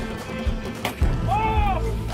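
Background music with a steady beat, over which comes a single sharp crack a little before the middle: a fishing rod snapping under the strain of a bluefin tuna. A short voice-like cry that rises and falls follows.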